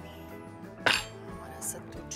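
A blender jar set down on the counter with one sharp knock about a second in, then a lighter click as its lid is handled, over background music.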